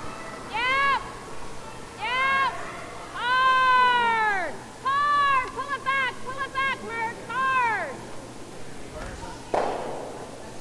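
A curler shouting drawn-out sweeping calls to her sweepers: a series of high cries, each rising and falling in pitch. The longest is about a second and a half near the middle, followed by several quicker, shorter calls.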